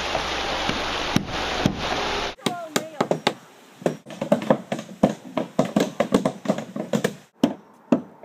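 Several hammers driving nails into the planks of a wooden boardwalk: many sharp, overlapping knocks at an uneven pace from several people at once. These follow about two seconds of steady rushing noise, and stop a little before the end.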